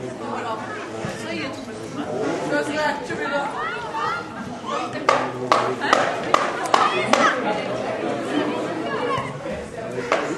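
Spectators chatting near the microphone, with several voices overlapping. About halfway through comes a quick run of about six sharp claps.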